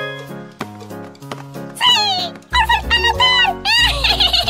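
Cartoon background music, joined about two seconds in by a cartoon creature's high, squeaky chattering voice that slides up and down in pitch, with a deep bass line coming in shortly after.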